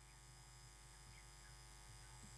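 Near silence: a faint steady electrical mains hum from the public-address system during a pause in the speech.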